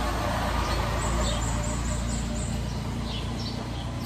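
Steady low background hum and rumble, with a faint run of about half a dozen short high-pitched chirps from about one second in.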